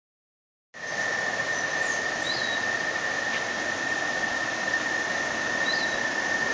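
Steady rush of a fast-flowing river, starting under a second in, with a constant thin high-pitched whine over it and a few faint short chirps.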